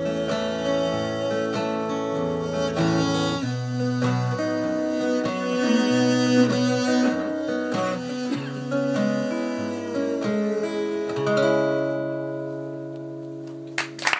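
Acoustic guitar and violin playing an instrumental outro, chords changing every second or so. The ensemble ends on a held chord, from a little after the middle, that fades out.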